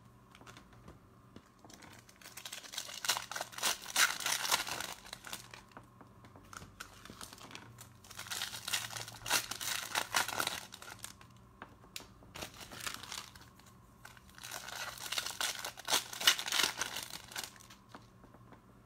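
Trading cards rustling and sliding against one another as a stack is thumbed through by hand, in three bursts a few seconds apart with quiet stretches between.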